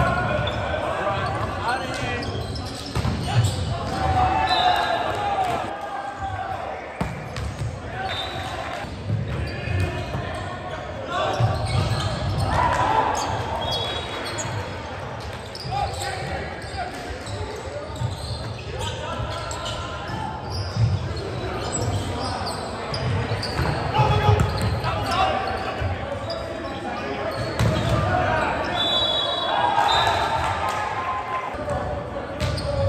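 Live sound of an indoor volleyball game in a large gym: players call out and shout, and the ball is struck and hits the floor, all echoing in the hall.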